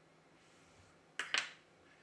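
Two quick small clicks, close together a little past the middle, from metal tweezers handling a phone's coaxial antenna cable; otherwise near silence.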